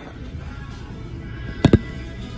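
Background music, then near the end two quick sharp knocks of a phone being set down on a toilet tank lid.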